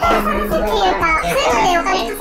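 A high-pitched voice talking without pause.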